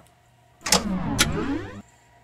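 A sound effect about a second long, made of sweeping tones that rise and fall across one another, with two sharp hissing bursts about half a second apart, marking the switch to blacklight.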